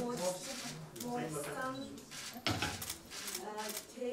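Voices talking quietly in a room, with a few short clicks in among them.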